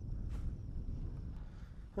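Wind buffeting the microphone: a steady low rumble, with a faint brief sound about a third of a second in.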